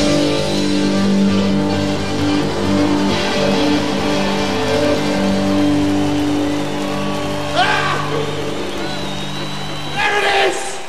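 Live rock band holding a sustained final chord on electric guitar and bass as the song ends, the held notes slowly easing off, with a brief rising shout about seven and a half seconds in.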